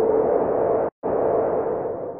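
A regeneration sound effect: a steady rushing whoosh over a held hum. It cuts out abruptly for an instant about a second in, resumes, and begins fading near the end.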